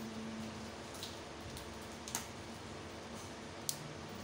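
A few faint, sharp clicks over quiet steady room noise, the sharpest near the end, as the EGS002 sine-wave inverter board is switched on by hand.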